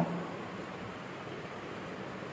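Steady background hiss of room noise, with no distinct sound standing out.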